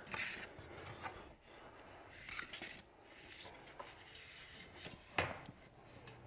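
Fiberglass fish rod being pushed down inside a wall cavity through spray foam and batt insulation, giving faint scraping and rustling with small clicks, and one sharper knock about five seconds in.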